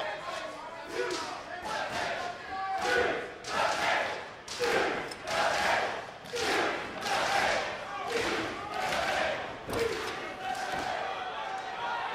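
Wrestling crowd chanting in a steady, repeating rhythm, each chant swelling and falling about once a second.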